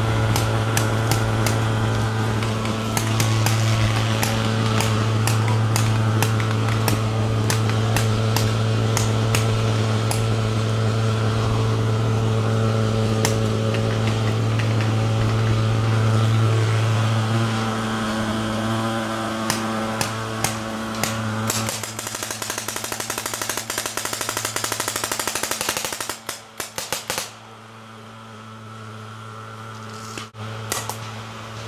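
Paintball markers firing many shots in rapid, irregular strings over a steady low hum. The shooting thins out to scattered shots after about twenty seconds.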